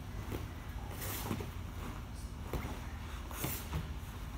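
Jiu-jitsu gis swishing and bodies shifting on a foam mat during a side-to-side passing drill: two short swishes about two seconds apart, over a steady low hum.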